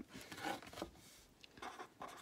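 Pen writing on paper on a clipboard: faint, scratchy strokes in short bursts.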